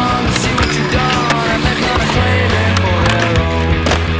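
Music playing over skateboard sounds: polyurethane wheels rolling on concrete and sharp clacks of the board, the loudest near the end.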